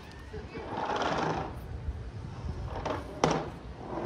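Tennis ball impacts in a rally on a hard court: a fainter pop, then a sharp, loud pop about half a second later, near the end. A rushing background noise swells about a second in.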